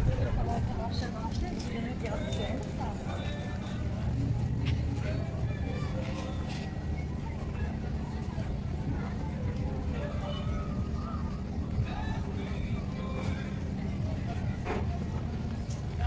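Outdoor street ambience: scattered voices of passers-by over a steady low rumble, with a few short clicks.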